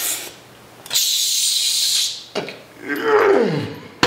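A man's loud hissing exhale lasting about a second, followed by a groan that slides down in pitch, as he pushes a cable tricep pushdown down: the forced breath out on the effort of the rep.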